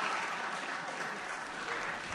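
Audience applause, already under way and slowly dying down.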